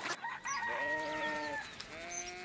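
A rooster crowing: one long drawn-out crow that holds steady and drops in pitch at the end. Another crow begins right at the end.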